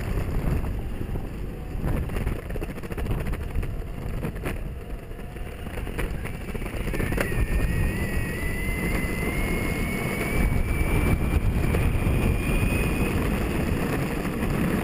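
Electric skateboard riding along a tarmac street: a steady rumble of the wheels on the road and wind on the microphone. From about halfway through, a thin motor whine rises slowly in pitch as the board speeds up.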